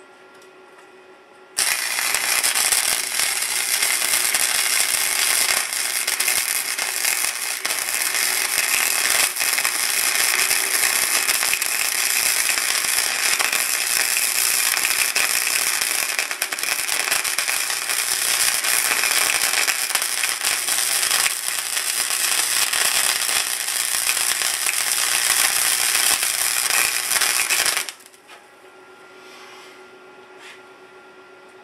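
Stick-welding arc crackling and sputtering steadily while a bead is run along a crack in a steel siren horn. It strikes about a second and a half in and cuts off shortly before the end, with a faint hum under it.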